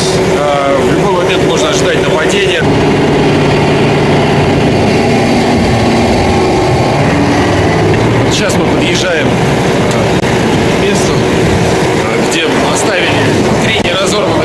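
Armoured personnel carrier's engine running in a steady drone as it drives, heard from on top of the hull, growing fuller a couple of seconds in.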